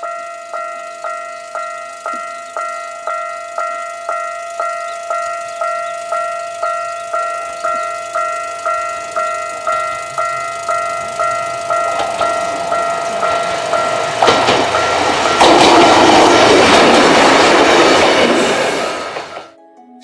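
Japanese level-crossing bell dinging steadily, about one and a half rings a second. From about twelve seconds in, a diesel railcar draws close and passes, its engine and wheels growing loud enough to drown out the bell, with clacking wheels, before the sound cuts off just before the end.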